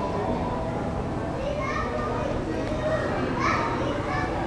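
Indistinct background voices of people in a public space, including high-pitched children's voices, loudest about halfway through and again near the end.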